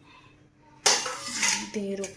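Metal kitchen utensils being handled: a sudden clatter about a second in, ringing briefly, followed by more clinks.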